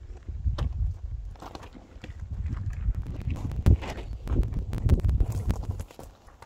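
Plastic ground sheets rustling and crackling as they are shaken out and spread over the ground, with footsteps crunching on gravel. The strokes are irregular, busiest in the second half.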